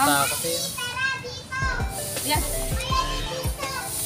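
High-pitched children's voices, excited and shouting, over background music with a steady beat of about two thuds a second.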